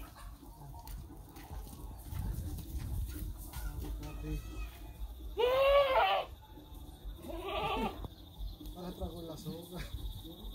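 Anglo-Nubian buck goat bleating twice: a loud call that rises and falls in pitch, about five and a half seconds in, then a shorter, fainter bleat about two seconds later.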